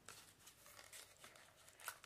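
Near silence, with faint rustling and small clicks of a plastic wax-bar package being handled.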